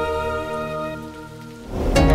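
Soundtrack music: sustained chords fade away, then a rising rush of noise swells up near the end as a transition into the next passage of music.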